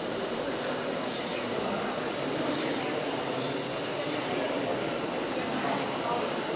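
Knife edge drawn in strokes across the diamond plate of a Work Sharp Guided Field Sharpener, a light rasp roughly every second and a half, against steady crowd chatter.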